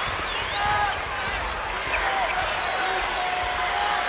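Basketball being dribbled on a hardwood court over the steady crowd noise of a large arena.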